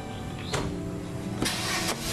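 A car engine starting, a short burst of noise in the second half, over background music.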